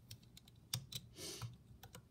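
Light, irregular clicks and taps of a plastic hook against the clear plastic pegs of a Rainbow Loom as rubber bands are picked up and pulled over, with a short hiss a little past halfway.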